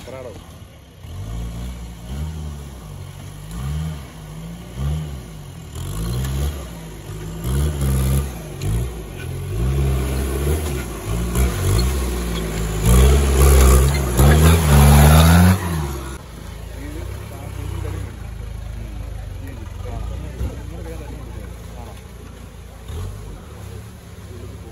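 Off-road 4x4 jeep engine revving hard in repeated surges as it climbs a muddy, rutted trail, the pitch rising and falling with each blip of the throttle. The revving is loudest a little past the middle, with a rush of noise over it, then drops back to a low idle-like running for the rest.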